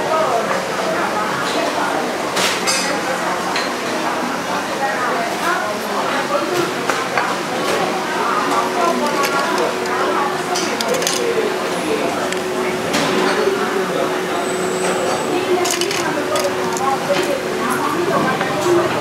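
Indistinct chatter of diners in a busy coffee shop, with scattered clinks of crockery and cutlery, including spoons and small sauce dishes knocking in a stainless steel bowl. A faint steady hum runs through the second half.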